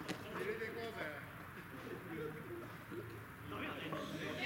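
A single sharp knock as a pitched baseball reaches the plate, followed by players' drawn-out calls across the field.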